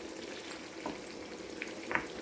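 Chicken and chickpea stew in tomato sauce simmering in a frying pan as a wooden spoon stirs it, with a few short knocks of the spoon against the pan, the loudest just before the end.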